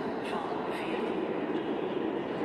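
Ambience of a busy railway station hall: a steady, echoing wash of distant voices and bustle, with a few faint clicks.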